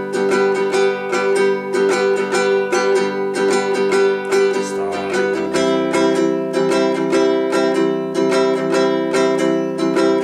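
Baritone ukulele strummed in a steady rhythm, with a chord change about five and a half seconds in.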